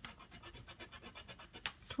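A coin scraping the coating off a scratch-off lottery ticket in quick, even strokes, about ten a second, with one louder scrape near the end.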